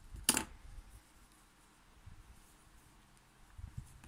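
A single sharp snip of scissors cutting a strand of crochet yarn, about a third of a second in. Then quiet room tone with a faint soft knock near the end.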